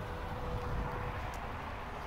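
Steady low rumble of outdoor background noise, with a faint steady hum for about the first second.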